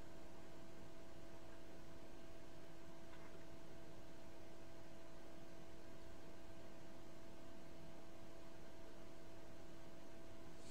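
Quiet, steady hiss with a faint constant two-note electrical hum: room tone, with no distinct sound event.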